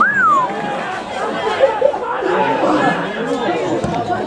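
Several voices shouting and calling over one another on a football pitch, with one sharp cry rising then falling in pitch right at the start.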